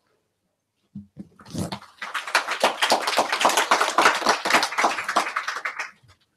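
Close rustling and scraping right at the microphone as a flower garland is placed around a seated man's neck and a person leans in over the mic. After a second of silence it becomes a dense crackle of rubs lasting about four seconds.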